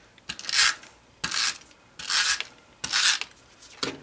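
A hand rubbing over two layered pieces of cardstock, pressing them together: four short rubbing strokes, roughly one a second.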